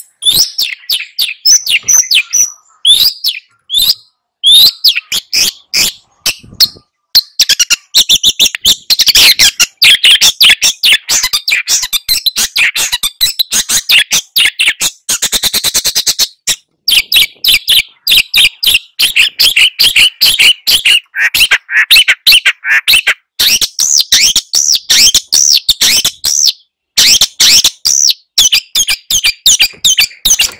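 Long-tailed shrike (cendet) singing in full, a loud, fast string of sharp chattering notes with a very rapid trill about halfway through, broken by short pauses.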